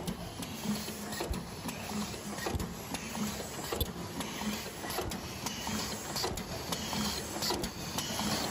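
Automatic paper lid making machine running, its rotary forming turret cycling with a steady rhythmic clatter of about two strokes a second and scattered sharp clicks.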